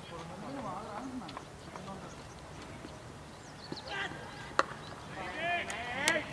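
A cricket bat striking a leather ball, with one sharp crack about four and a half seconds in, among players' distant voices and calls, which grow louder after the shot.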